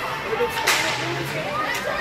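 A sharp slap from play on the ice about two-thirds of a second in, over spectators' chatter in an ice rink.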